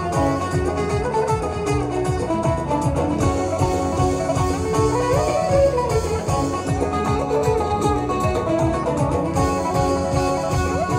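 Live band music: a long-necked plucked lute plays a quick melody over keyboard and a steady low drum beat.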